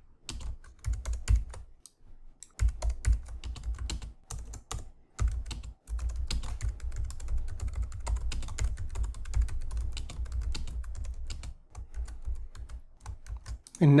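Typing on a computer keyboard: rapid keystrokes in quick runs broken by a few brief pauses.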